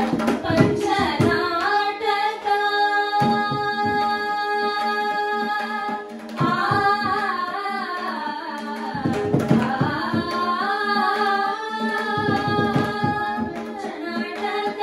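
A group of female voices sings a Carnatic devotional song (a Dasa devaranama) over a steady drone, accompanied by mridangam strokes. From about two seconds in the voices hold one long note while the drum plays only a few strokes. After a brief dip at about six seconds the melody moves again, and the drumming grows busier in the second half.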